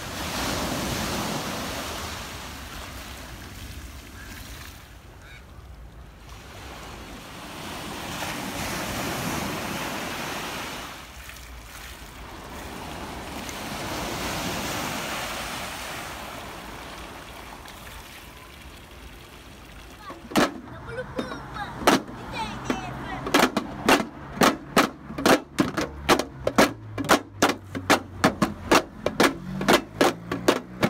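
Waves breaking and washing up a sand beach, swelling in every five seconds or so. About twenty seconds in this gives way to sharp clicks from children beating homemade tin and plastic drums with sticks, sparse at first, then a quick steady rhythm of about three strikes a second.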